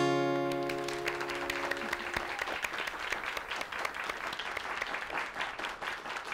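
The last strummed chord of a song on a steel-string acoustic guitar rings out and fades away over about two seconds. Audience applause rises under it and carries on steadily.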